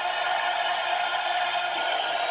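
A long, steady sung note of the national anthem held over the noise of an arena crowd, heard from a television broadcast.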